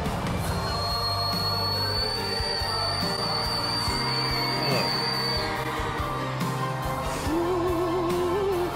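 Live pop concert recording: a male singer holds a very high, steady whistle-register note for about five seconds over the band and crowd. Near the end he comes back down to a lower line sung with vibrato.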